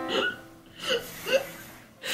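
A woman's stifled laughter: three short, catching bursts of laughing held back behind a hand over the mouth.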